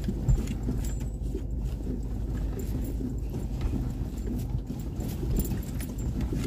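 Car driving over a rough, potholed dirt road, heard from inside the cabin: a steady low rumble from the engine and tyres, with irregular knocks and rattles as the wheels hit bumps, the sharpest about a third of a second in.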